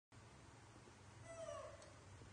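A young macaque gives one short call, slightly falling in pitch, a little past a second in, over faint room tone.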